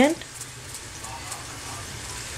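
Steady low hiss of a pan of rasam simmering on a gas burner.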